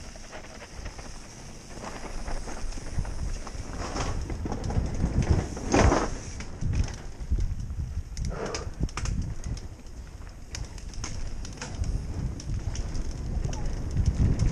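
A mountain bike ridden down a bumpy dirt trail, heard from the rider's helmet: a low rumble of wind on the microphone with scattered knocks and rattles from the bike over the bumps, loudest about six seconds in.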